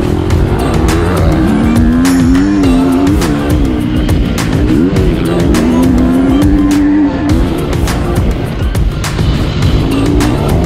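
Husqvarna motocross bike engine revving up and down as the throttle is worked around the dirt track, with heavy wind rumble on the microphone and occasional knocks from the bike over bumps.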